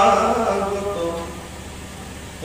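A man chanting scripture verses in a melodic, sung recitation of the Bhagavata, holding drawn-out notes; the chant tails off about a second in.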